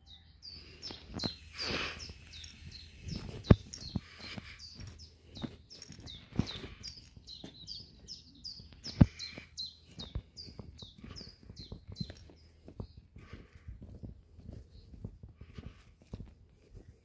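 Small birds chirping in quick runs of short, falling high notes, several a second, with a few sharp knocks, the loudest about three and a half and nine seconds in.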